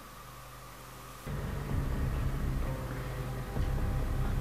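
A low, steady rumble starts about a second in and carries on, with a faint hum of tones above it. It comes from the TV drama's soundtrack.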